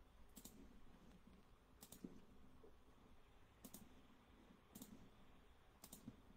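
Near silence: room tone with about five faint, sharp clicks at irregular intervals of a second or so, some of them doubled.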